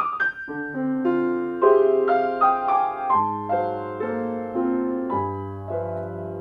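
Solo jazz piano on an acoustic grand piano: a ballad played as a series of held chords that change every half second to a second, with deep bass notes struck about three seconds in and again about five seconds in.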